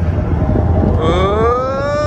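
Expedition Everest roller coaster train running with a steady low rumble on the track. About a second in, a long rising call starts over it and slowly climbs in pitch.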